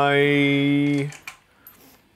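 A man's voice holding one drawn-out word, 'I…', at a steady pitch for about a second, then cutting off into near quiet with a few faint clicks.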